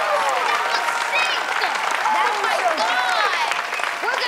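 Applause with excited children's high-pitched voices calling and cheering over it.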